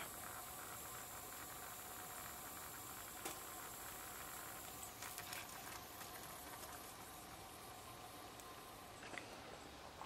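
got2b Rockin' It Forever Style Stay Encore Fresh dry shampoo aerosol can giving off a faint, steady fizzing hiss with light crackling on its own after being sprayed, an unexpected after-effect that makes her worry it might blow up. The higher part of the hiss thins about halfway through.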